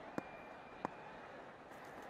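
Faint cricket-ground ambience from the broadcast, a low even background with two brief faint clicks, one just after the start and one just before the middle, and a faint thin high tone under most of it.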